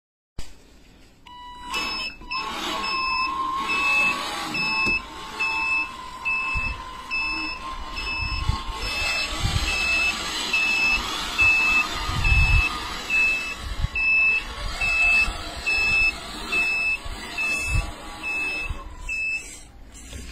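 Toy RC tractor-trailer dump truck reversing, its reverse-warning beeper going about one and a half times a second over the steady whine of its electric drive motor. Low rumbles come in now and then as the wheels roll over the rubble.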